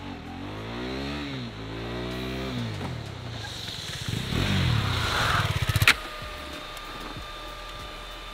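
KTM RC 390's single-cylinder engine revving up and down as the motorcycle rides toward the camera, growing louder over the first six seconds. The sound cuts off abruptly about six seconds in, leaving a quieter steady hum.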